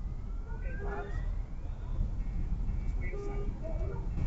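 A distant siren wailing, its pitch rising slowly over the first two seconds and holding a faint steady tone later, over a steady low rumble of idling vehicle engines.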